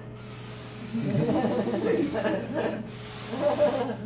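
A man imitating the wind with his voice: a long breathy whooshing hiss, then a second shorter one about three seconds in, with his voice sounding under it from about a second in.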